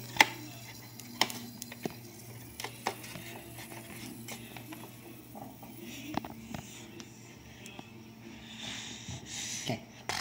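A low steady hum with a few scattered sharp clicks and knocks, like things being handled, and a soft rustle near the end.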